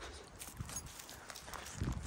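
Faint footsteps and scuffs on dirt ground, with a few light clicks and soft thumps, a little stronger near the end.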